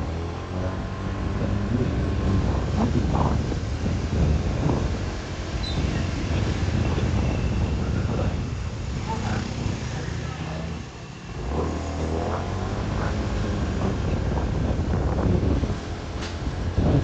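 Motor scooter engine running under the rider on a town street, with wind and road noise and other scooters passing. About two-thirds of the way through the engine drops away briefly, then picks up again.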